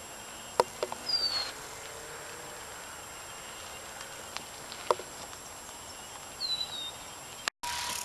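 Faint outdoor ambience with two short, high, down-slurred bird whistles, one about a second in and another at about six and a half seconds, and a few sharp clicks; the sound cuts out for an instant near the end.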